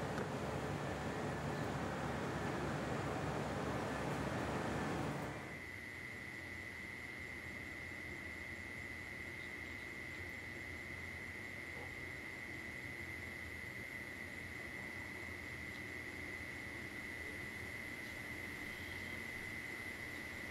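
A steady rushing noise that cuts off sharply about five seconds in. After it comes a quieter night background with a continuous high insect trill, typical of crickets.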